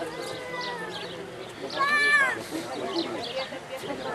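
Crowd murmur with a high-pitched, drawn-out cry about two seconds in that rises and then falls, the loudest sound here; a fainter, slowly falling cry comes in the first second.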